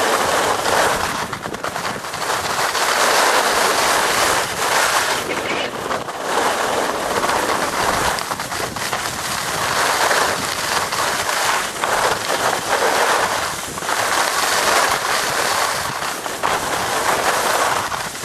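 Skis scraping and carving over packed snow, a loud hiss that swells and fades every few seconds with each turn, with wind rushing over the microphone.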